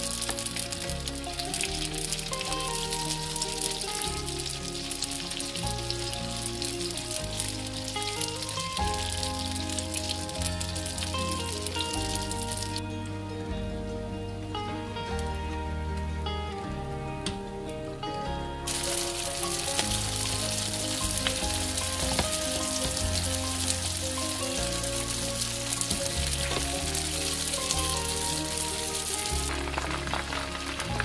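Vietnamese spring rolls in rice paper sizzling as they fry in hot oil in a frying pan, under background music. The sizzle drops away for several seconds in the middle and then comes back.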